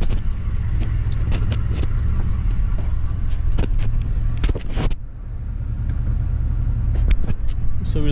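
A Toyota pickup's engine idling, heard from inside the cab as a steady low rumble, with scattered clicks and knocks of handling, and a brief dip in level about five seconds in.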